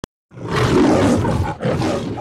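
A loud, rough roar in two bursts, the first about a second long and the second shorter, trailing off.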